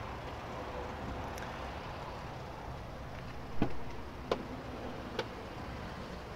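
Steady low outdoor background noise with three short sharp clicks, the loudest about three and a half seconds in and the others about a second apart.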